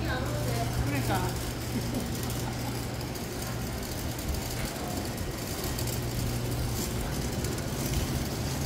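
Ambient sound of a busy covered market aisle: passers-by's voices in the first second or so, then a general murmur over a steady low hum.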